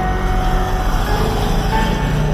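An SUV driving past close by, its engine and tyres rumbling steadily, with music playing underneath.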